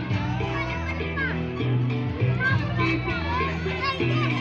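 Children shouting and calling out while playing in a swimming pool, over background music with a steady bass line.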